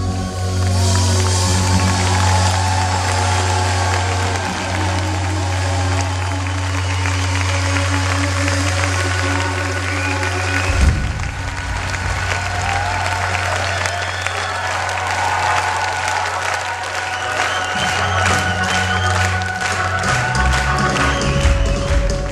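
Live rock band (drums, electric guitar, bass) playing held chords over a sustained low bass note, with the concert audience applauding throughout. The low note breaks off and changes about halfway through.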